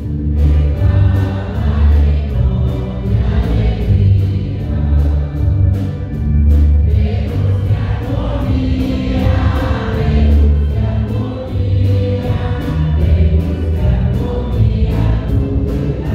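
A choir singing a hymn of rejoicing over a deep, steady bass accompaniment.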